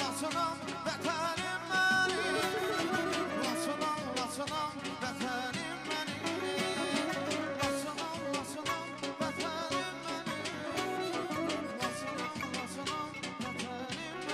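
Music: a man singing into a microphone over instrumental accompaniment with a steady beat.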